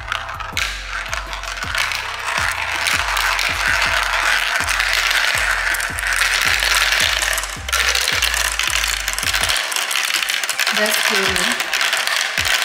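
Glass marbles clattering and rattling as they roll down the tracks, funnels and spirals of a plastic marble run, a dense stream of small clicks. Background music with a stepping bass line plays underneath and stops about nine and a half seconds in.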